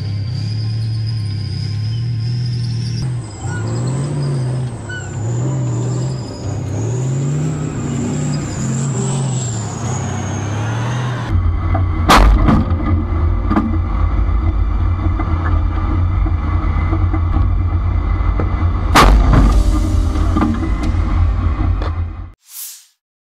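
Music over a tank's running engine. About halfway in, the sound changes to the heavy low rumble of a T-90 tank's engine, with two loud shots from its 125 mm main gun about seven seconds apart.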